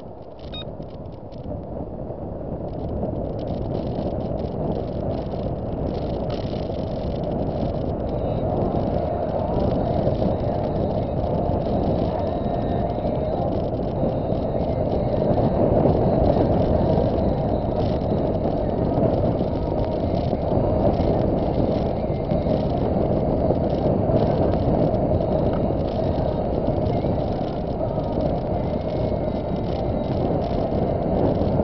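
Car driving, heard from inside the cabin: a steady rumble of tyres and engine that grows louder over the first several seconds as the car picks up speed, then holds even.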